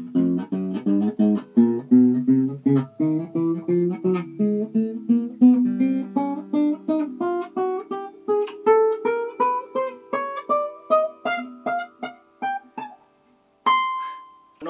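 Enya Nova Go carbon fiber acoustic guitar played as a run of picked notes over low ringing bass notes, about three to four notes a second. The line climbs steadily in pitch through the second half. One clear high note rings out on its own near the end.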